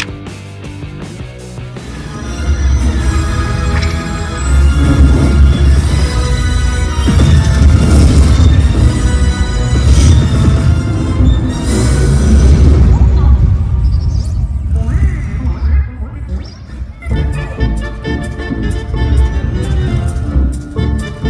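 An outdoor projection show's soundtrack played loud over park loudspeakers: music with heavy bass, spoken film lines and crash effects. It swells about two seconds in and eases off near the end.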